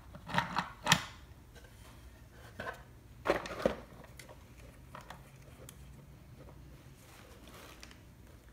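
Hard plastic and metal parts of a digital microscope knocking and clicking as the stand and display are handled and fitted together, a handful of sharp clicks in the first four seconds, then quiet.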